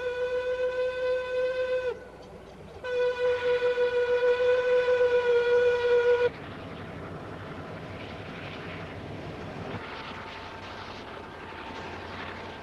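Train horn on a rotary snowplow train sounding two blasts of one steady pitch, a short one and then a longer one of about three and a half seconds. After that comes a steady rushing noise as the rotary plow throws snow.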